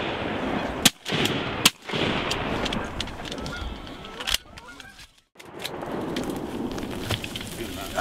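Shotguns firing at geese overhead: sharp shots about a second in, just before two seconds and past four seconds, over a steady din of honking geese and voices.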